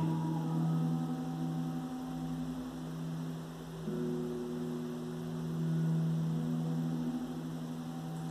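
A sustained low musical drone of several steady tones that slowly swells and fades, with a higher tone joining about four seconds in.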